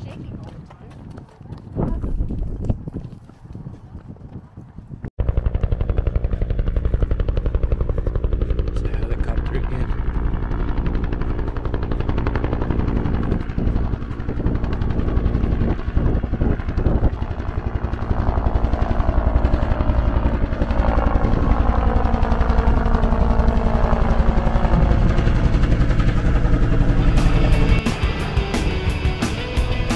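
Helicopter passing overhead: a loud, steady rotor chop that starts abruptly about five seconds in, with a pitch that slowly glides near the end.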